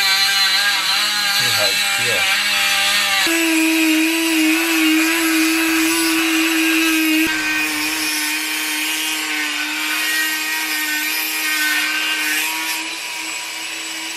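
Handheld rotary tool running at high speed, its cut-off wheel grinding through a metal rod: a steady whine with gritty cutting noise. The pitch shifts slightly about three seconds in and again about seven seconds in.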